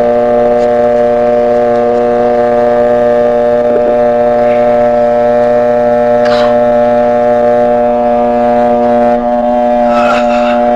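Electrosurgical cautery pen switched on and buzzing loudly as it cuts into a wrist, a steady electric drone that holds one unchanging pitch.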